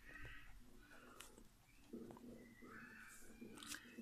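Faint scratching of a pen writing on notebook paper, with a few small clicks.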